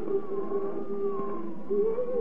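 Slow music received on shortwave, a single sustained melody note wavering in pitch that steps up to a higher note near the end, over the receiver's background noise.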